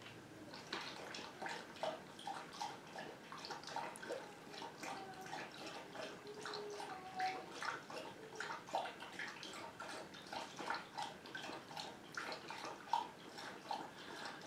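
Faint, irregular small clicks and soft rustles from a makeup brush and eyeshadow palette being handled as eyeshadow is brushed onto the eyelid.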